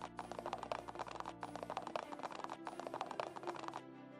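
Rapid clicking sound effect in repeating blocks of a little over a second, with short breaks between, over steady background music.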